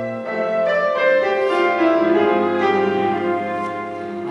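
Instrumental interlude of a gospel song's accompaniment: piano playing a slow, sustained melody of held notes, with no singing.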